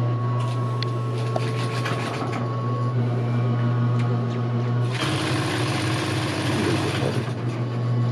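GEMSY industrial sewing machine stitching in a short run of rapid needle clicks lasting about two seconds, over a steady low hum. About five seconds in, a louder rushing noise starts and lasts about two seconds.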